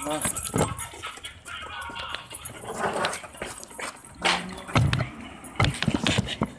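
People talking indistinctly, with several sharp knocks near the end.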